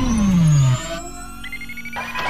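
Synthesized intro music and sound effect: a loud falling synth tone over deep bass that drops away about three quarters of a second in. It leaves a quieter low held tone and a thin, slowly rising high whine.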